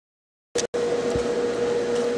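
Steady machine hum with one constant mid-pitched tone, like a fan running. It starts about half a second in, after silence and a brief click and dropout.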